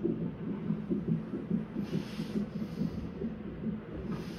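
Fetal heart monitor's Doppler speaker relaying the baby's heartbeat as a fast, steady whooshing pulse, about two to three beats a second. Two short hisses come around the middle.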